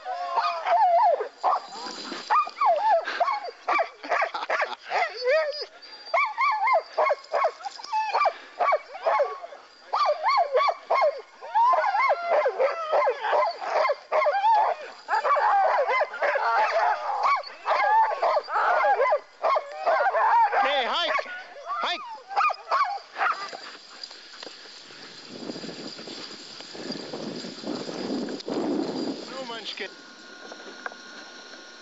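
A team of harnessed sled dogs barking and yipping, many dogs calling over one another. About 23 seconds in the calling stops, leaving a quieter, lower noise.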